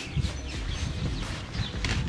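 Paper towel wiped and rubbed over a car's bumper and fog-light chrome trim to dry it: irregular rustling with many soft, quick thumps.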